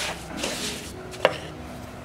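Wooden spatula stirring and scraping a dry, crumbly roasted gram-flour mixture around a dark-coated frying pan, with one sharp knock a little over a second in.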